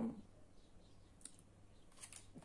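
A few faint clicks from a clear plastic bag being handled, the clearest about a second in.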